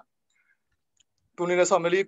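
About a second and a half of near silence holding two faint clicks, then a man's voice speaking again.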